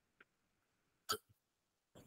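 Near silence broken by a single short gulp about a second in, as water is swallowed from a glass.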